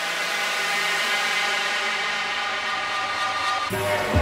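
Electronic music build-up: held synth chords under a thick wash of noise, with the bass cut out. Near the end the wash breaks off and the heavy bass of the drop comes in.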